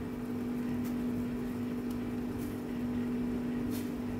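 Steady low hum of commercial kitchen equipment, with a few faint clicks of a metal spoon against the stockpot as it stirs boiling noodles.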